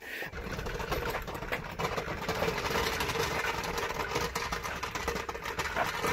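Small jack wheels and tyres rolling over rough asphalt: a steady rattling rumble with rapid small clicks, made as a stripped pickup frame is pushed along by hand.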